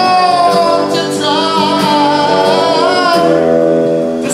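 A man singing long held notes with vibrato into a microphone, backed by strummed acoustic guitar and an electric guitar, in a live performance.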